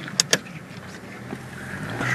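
Steady engine and road noise inside a moving car, with two sharp clicks in quick succession just after the start.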